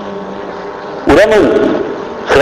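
A man's voice speaks a short phrase about a second in, after a pause filled only by a steady low background hum.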